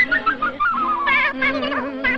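High-pitched, sped-up cartoon mouse voices chattering in short warbling bits, with a falling warble in the first second, over the film's orchestral score.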